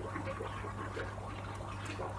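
Water flowing faintly and steadily out of a thin plastic siphon tube, the siphon running once started. A low steady hum lies underneath.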